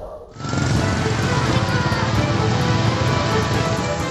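Large brush and grass fire burning, a steady roar and crackle that starts suddenly about half a second in, mixed with background music.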